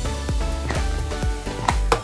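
Background music with a steady beat, about three strokes a second, and a sharp click near the end.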